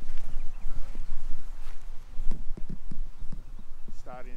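Wind rumbling on the microphone, with a series of irregular knocks and bumps from the camera being handled and swung around, several of them close together about two and a half seconds in.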